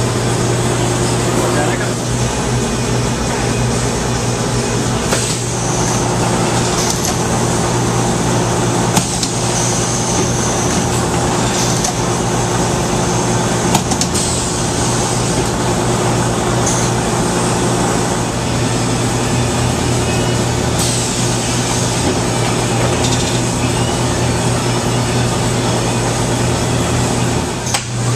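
Steady low machine hum of screen-printing press equipment, with a few sharp clicks from the press.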